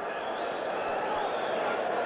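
Ballpark crowd giving a standing ovation: steady applause.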